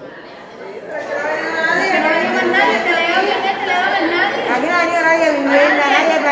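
Several people talking at once, their voices overlapping, rising to full level about a second in.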